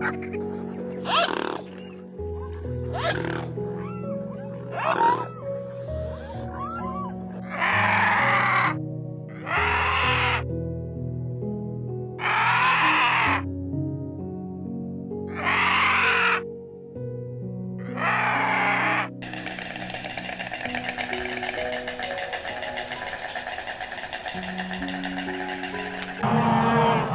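Gentle background music with harsh animal calls laid over it: three short calls in the first few seconds, then five rough calls of about a second each, roughly two seconds apart. Near the end these give way to a steady, dense rasping noise.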